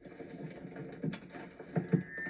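Microphone feedback squeal on a film soundtrack played through a TV speaker: a thin, steady, high whine comes in about a second in, with a couple of knocks.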